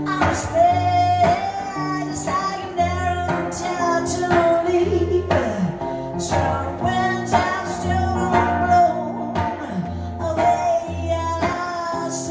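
A woman singing live, with held notes, over her own guitar playing.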